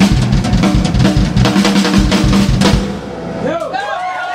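Live blues band with drum kit and electric guitar playing a steady driving beat that stops suddenly about three seconds in, leaving a held low note, with bending pitched notes coming in near the end.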